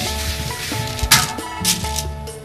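Background music over rice grains being stirred in a dry iron wok with a bamboo wok brush, with two short, loud scraping sweeps, about a second in and near the end.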